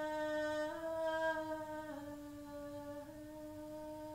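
A single voice humming without words in long, unbroken held notes that step slightly up and down in pitch about once a second.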